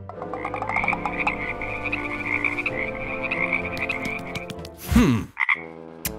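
Frogs croaking in a rapid, steady trill, added as a sound effect, followed by a loud falling glide about five seconds in.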